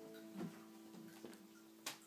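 The last strummed acoustic guitar chord fading away, faint, with two small clicks, one about half a second in and a sharper one near the end.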